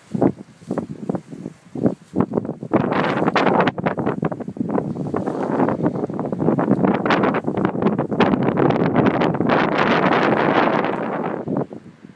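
Loud crackling rustle of grass close to the microphone as a wombat grazes and pushes through it. It starts as separate snaps, thickens into a dense continuous rustle after about three seconds, and cuts off abruptly just before the end.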